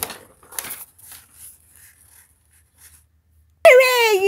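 Sheets of lined notebook paper rustled by hand in two brief bursts near the start, then faint handling sounds. Near the end a child's voice breaks in with a loud drawn-out wail that falls slowly in pitch.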